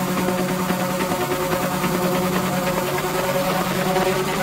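Techno track in a breakdown: a steady, sustained droning synthesizer chord with no kick drum and little deep bass underneath.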